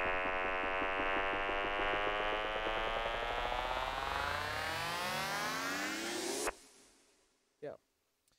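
Synthesizer riser from a Serum wavetable patch: a digital, buzzy tone with plate reverb and delay, sweeping steadily upward in pitch and brightness for about six and a half seconds, then cutting off abruptly with a short reverb tail.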